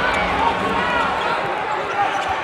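Basketball arena crowd noise: a steady wash of many voices in a large hall.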